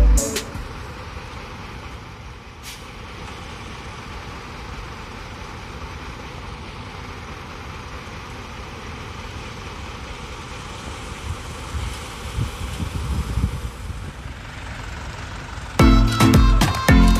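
Concrete mixer truck running as it pours concrete down its chute, a steady mechanical noise with a few low bumps late on.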